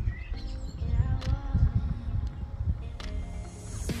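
Background music with held, sustained notes, over a low, uneven rumbling noise.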